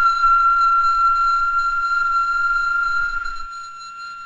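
A single whistled tone played back from a handheld recorder held to the microphone, with a person whistling live alongside it at a slightly different pitch. The two close tones make a discordant sound that carries their sum and difference frequencies. The live whistle stops about three and a half seconds in while the recorded tone carries on.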